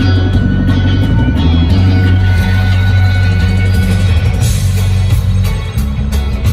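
A live band playing loud, bass-heavy music, with an electric bass guitar prominent. A rising electronic sweep builds through the middle, and the music dips briefly just before the end.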